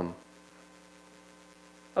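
Faint, steady electrical mains hum made of several even tones, left audible in a gap between spoken words.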